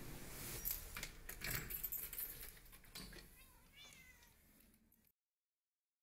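A cat meowing once, rising and falling, about three and a half seconds in, sampled into the fading end of an electronic remix over faint scattered clicks and ticks. All sound cuts off about five seconds in.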